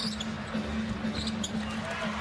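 Arena crowd noise during live basketball play, with a few short high squeaks of sneakers on the hardwood court and a steady low hum underneath.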